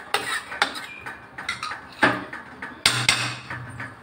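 Metal ladle stirring thick curry in an aluminium pressure cooker, knocking and scraping against the pot's side about five or six times, the loudest knock a little before three seconds in.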